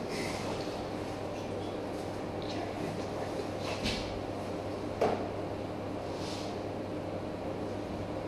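Steady room hum with faint handling rustles and clicks. There is a small knock about four seconds in and a sharper knock about five seconds in.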